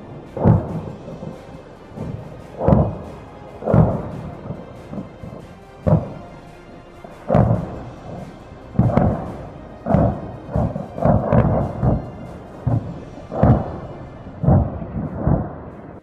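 Stored munitions in a burning ammunition depot detonating: about a dozen heavy booms at irregular intervals of one to two seconds, each followed by a short rumble.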